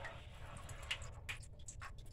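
Faint scattered ticks and clicks, a handful of them mostly in the second half, from a long screwdriver turning the slotted drain valve at the bottom of a water heater as the valve is opened to drain the tank.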